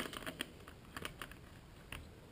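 A few faint plastic clicks and taps as the battery pack is pushed and seated into the battery bay of an Acer Aspire One netbook.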